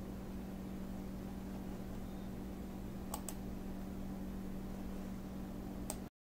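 A steady low hum with a few light clicks of pliers tips against small metal rhinestone settings being positioned for soldering: two close together about halfway through and one near the end.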